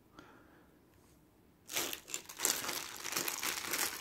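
A clear plastic bag crinkling as it is handled, starting a little before halfway after a near-silent pause.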